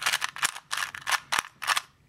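Plastic 2x2 puzzle cube having its layers turned quickly by hand, a rapid run of about ten clicks, about five a second, that stops shortly before the end as the last-layer (ZBLL) algorithm finishes the solve.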